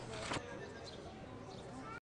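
Faint outdoor background ambience at a street market, with one brief, slightly louder sound about a third of a second in.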